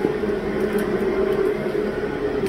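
Steady hum of cooling fans and air handling in a small cell site equipment room, a low drone with a steady higher tone over it.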